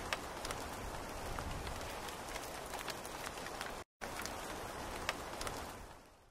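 Steady rain falling, with scattered sharp drop ticks. It cuts out for a moment just before four seconds in, then fades away near the end.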